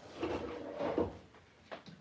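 Rummaging and handling knocks as a heat gun is fetched from below the work table, with a short sharp click near the end.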